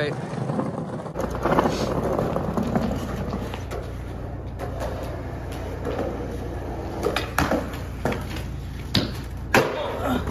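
Skateboard wheels rolling over concrete with a steady rumble, then several sharp clacks of the board in the last few seconds.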